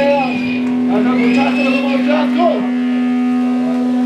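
Amplified electric guitar left ringing after a punk song, a steady held drone with wavering squeals over it in the first couple of seconds, and voices shouting.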